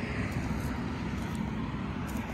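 Steady low background rumble of distant road traffic, with no single sound standing out.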